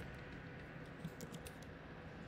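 Faint computer keyboard clicks, a handful of key presses, several of them bunched about a second in.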